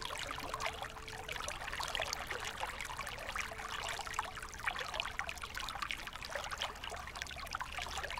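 Soft, steady trickling of a small stream, an irregular patter of flowing water.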